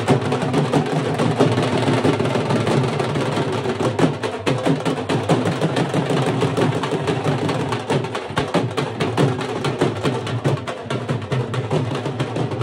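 A group of dhols, double-headed barrel drums, beaten with sticks in a fast, unbroken rhythm of many strokes a second.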